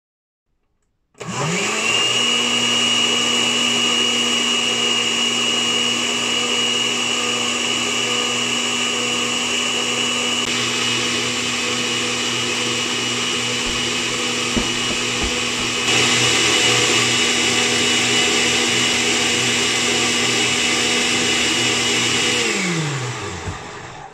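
Countertop electric blender switched on: the motor spins up about a second in, runs steadily with a high whine for some twenty seconds, and slows to a stop near the end.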